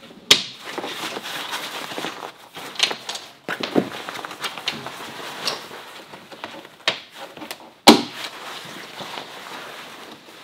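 Snap fasteners on a camper's tent fabric being pulled apart by hand one after another: about half a dozen sharp pops, the loudest about eight seconds in, with fabric rustling between them.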